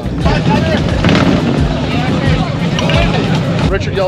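Motorcycle engines running at idle, a steady low rumble, under the chatter of a crowd.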